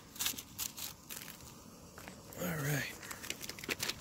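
Plastic food-ration wrappers crinkling as they are handled, a string of small sharp crackles. A short wordless voice sound comes about two and a half seconds in.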